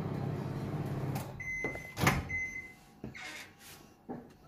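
Microwave oven humming through the last seconds of its cycle and cutting out about a second in, then two high beeps with a sharp click of the door latch opening between them. Fainter rustling and scraping follow as the bowl inside is handled.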